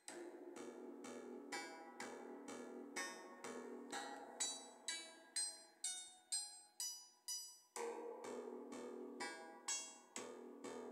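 Modular synthesizer oscillator playing short percussive plucked notes at an even 125 beats per minute, about two a second, with the pitch changing from note to note. The notes run through an Intellijel Springray spring reverb set to its largest spring with the wet mix turned up, so a sustained reverberant wash fills the gaps between them.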